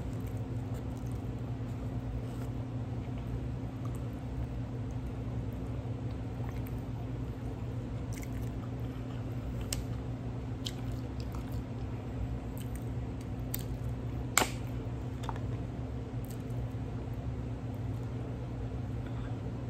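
Close-miked mouth sounds of someone chewing a mouthful of cheeseburger and grilled jalapeño, wet squishing with small clicks, over a steady low hum. One sharp click stands out about fourteen seconds in.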